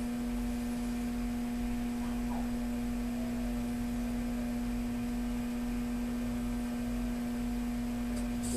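A steady hum at one constant pitch with fainter overtones above it, unchanging throughout.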